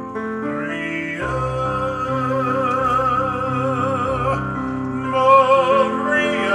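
A man singing in a full, operatic style with wide vibrato over his own electronic keyboard accompaniment. He holds one long note from about a second in, then a louder one near the end.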